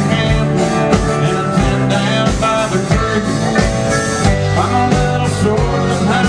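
Live country band playing at full volume: electric guitars, acoustic guitar and drum kit over a steady beat, heard through a venue's PA.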